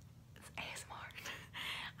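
A woman whispering a few breathy, unvoiced syllables, starting about half a second in.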